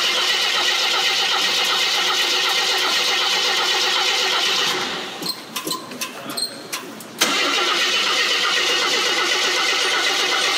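A 1975 AMC Gremlin X's inline-six engine running at a steady idle. About five seconds in, the engine sound fades away, leaving two seconds of quieter clicks and knocks. Then it is back at full level abruptly and idles steadily again.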